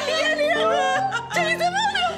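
Background music with held, sustained notes, overlaid by women's high, excited voices laughing and squealing with joy.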